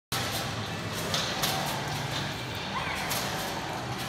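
Bungee trampoline in use: a few sharp thumps of the mat and rig as the jumper starts bouncing, over a steady low hum of a large indoor hall with faint voices.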